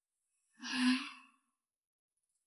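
A person sighing once, about half a second in: a short, breathy sigh with some voice in it, under a second long.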